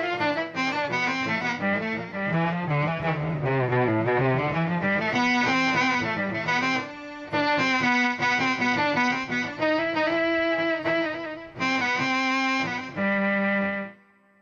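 Electric guitar played through an Electro-Harmonix Mel9 tape-replay pedal, giving Mellotron-style sustained instrument tones in place of plucked notes. A slow single-note melody falls to low notes and climbs back, breaks off briefly about halfway, and stops suddenly at the end.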